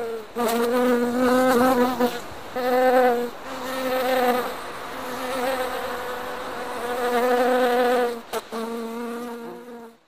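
Honeybees buzzing in flight: a steady low hum that swells and fades as bees pass close, breaking off briefly several times.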